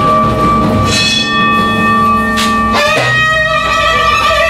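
Live acoustic ensemble music on early and folk instruments: long held notes under plucked oud and hand-drum strokes, with the notes changing about three seconds in.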